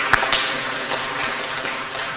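Audience applauding: many hands clapping in a steady patter.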